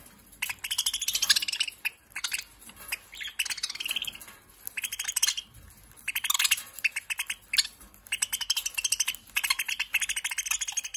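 A flock of caged budgerigars chattering, with rapid runs of high chirps coming in bursts that stop and start every second or so.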